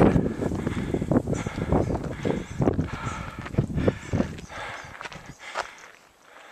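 Footsteps of a hiker climbing steep wooden railroad-tie steps on a dirt trail, about two steps a second, fading out near the end.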